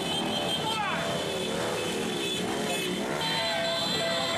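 Engines of many motor scooters in a large convoy running and passing, their pitch rising and falling, with people's voices mixed in.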